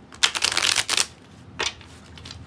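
A deck of tarot cards riffled under the thumb: a quick run of rapid card flicks lasting under a second, then a single flick a little later.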